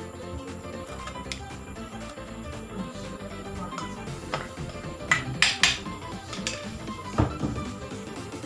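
Clinks and knocks of a spatula and bowl against a wok as grated cassava is scraped into the pan, the loudest few coming about five to seven seconds in, over steady background music.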